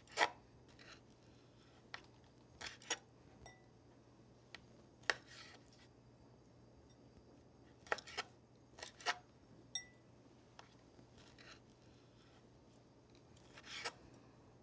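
Chef's knife chopping raw shrimp on a plastic cutting board: faint, sharp taps of the blade striking the board at an irregular pace, in small clusters with pauses between.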